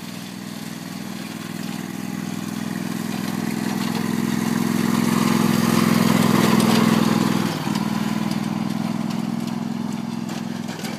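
Riding lawn mower engine running steadily as the mower drives past, growing louder as it approaches, loudest as it passes close by about six to seven seconds in, then a little quieter as it moves away.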